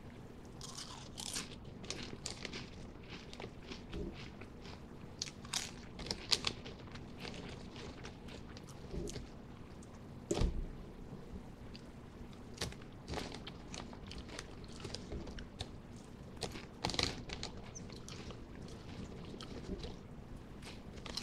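A person chewing Lay's potato chips close to a microphone: irregular crisp crunches throughout, with a few louder bites.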